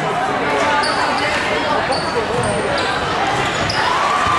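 Live basketball game sound: a basketball dribbling on the hardwood court over steady crowd chatter, with several short high-pitched squeaks of sneakers on the floor.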